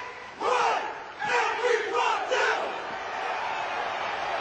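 A step team shouting in unison, four loud calls punctuated by hard stomps in the first two and a half seconds, then a steady crowd din.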